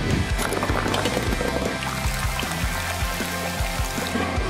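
Background rock music with guitar and a steady beat, with a rushing noise laid over it during the first two seconds.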